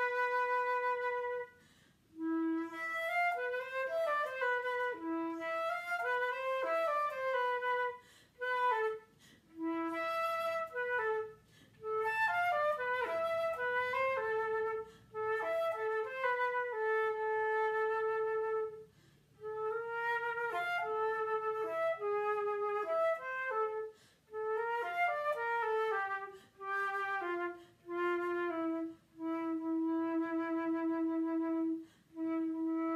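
Unaccompanied concert flute playing a melodic solo in phrases of quick note runs and held notes, broken by short breaths, closing on a long low held note.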